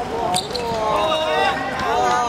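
A football thuds once about half a second in, then several players' voices shout and call over each other.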